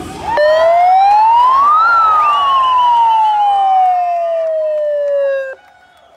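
Siren wailing: one rise in pitch followed by a long, slow fall, loud, cutting off suddenly near the end, with a fainter second wavering siren tone alongside.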